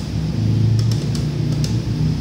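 ATM keypad keys pressed three times in the second half as the withdrawal amount is typed in, over a steady low hum.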